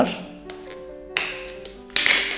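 Background music with held notes. Just over a second in comes a tap, then a scratchy rustle as fingers pick at the paper seal sticker on a cardboard box.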